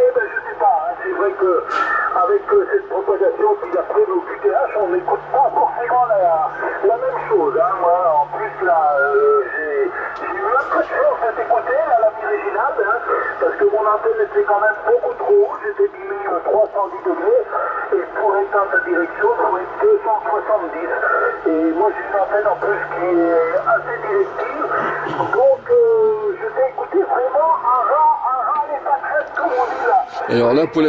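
Single-sideband voice traffic from distant stations on the 27 MHz CB band, heard through a Yaesu FT-450 transceiver's speaker: thin, narrow-band voices talking without a break.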